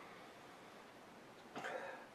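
Near silence, broken about one and a half seconds in by one short breathy burst from a man nosing a glass of beer.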